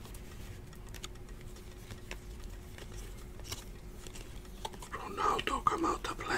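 Faint clicks and light rustling of glossy trading cards being handled and shuffled through in the hands, over a low steady hum, with a quiet voice near the end.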